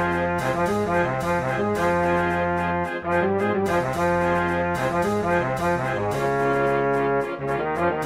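Wind band (banda de música) playing a dobrado, a Brazilian march: brass melody and harmony over a bass line that steps from note to note in a steady march rhythm.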